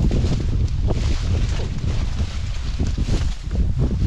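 Wind buffeting the microphone with a continuous low rumble, over leaves and branches rustling and footsteps as people push through dense scrub.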